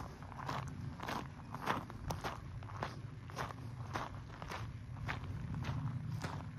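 Footsteps crunching on a gravel driveway at a steady walking pace, about two steps a second.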